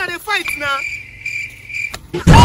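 A brief cry from a person's voice, then a steady, high-pitched insect-like trill that cuts off suddenly just before the end.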